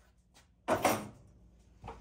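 Tools being handled on a workbench: one short scraping clatter about two-thirds of a second in, then a fainter knock near the end.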